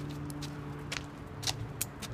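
Footsteps on pavement with a few sharp clicks, over a steady low hum that fades out near the end.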